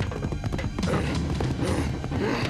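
Cartoon galloping-hooves sound effect: a rapid run of clip-clop hoofbeats over background music.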